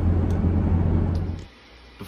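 Steady low hum of engine and road noise inside a pickup truck's cabin. It cuts off suddenly about one and a half seconds in, giving way to quiet room tone.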